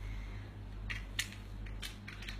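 Three or four short, sharp clicks about a second apart, over a steady low hum.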